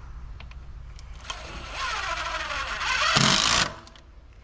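Cordless drill driving a screw through a gate's strap hinge into the wooden post, its motor whining for about two and a half seconds with the pitch shifting under load, loudest near the end, then stopping suddenly as the screw seats.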